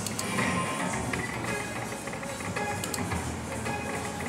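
Slot machine's electronic game sounds during a free-spin bonus round: music with short repeated beeping tones as the reels spin.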